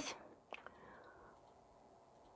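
Near silence: room tone, with two faint short clicks about half a second in.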